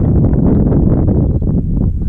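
Wind buffeting the camera microphone: a loud, steady low rumble.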